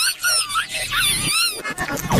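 A cartoon girl's crying, run through stacked audio effects so that it comes out as a high, wavering, squealing wail in short sobs that break off and restart; the sobbing stops just before the end.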